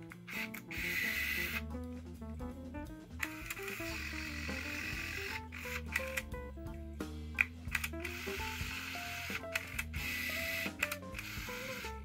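Background music with a stepped melody. Over it, an Olympus Superzoom 700BF compact film camera's motorised zoom lens whirs briefly as it extends about a second in, and again as it retracts near the end.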